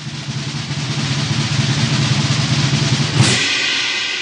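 Drum roll that builds steadily in loudness, ending in a cymbal crash about three seconds in that rings on and fades: a winner-reveal fanfare.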